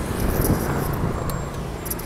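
Steady rumble of street traffic, motorbikes and cars passing, with a few faint clicks.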